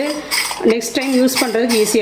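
Light metal clinks and knocks of a hand-held metal murukku press as its cylinder, plate and lever handle are handled and taken apart, with a woman's voice speaking at the same time.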